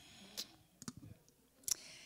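A few faint, sharp clicks picked up close to a handheld microphone, scattered through a quiet stretch.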